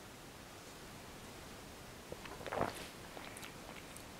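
Faint chewing and mouth sounds of a person eating a chewy, sugary bite of European paper wasp honey. A few soft clicks and smacks cluster a little past halfway in.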